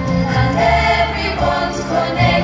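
Live musical-theatre number: cast singing together over an onstage band of accordion and acoustic guitars, with sustained low bass notes underneath.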